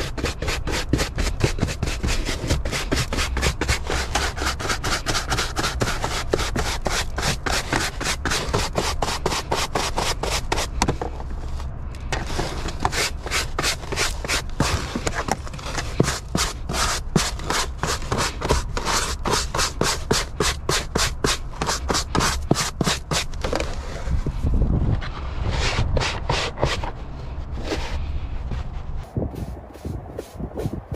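Stiff-bristled hand brush scrubbing a car's carpeted floor in quick, repeated short strokes, several a second, sweeping dust into a plastic dustpan.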